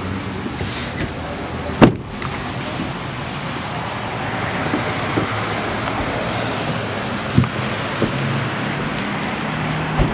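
Steady traffic noise on a wet road, with a sharp, loud bang about two seconds in as a truck door shuts, and a smaller knock later.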